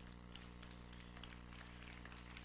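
Near silence: a pause in speech with only a steady low hum and a few faint ticks.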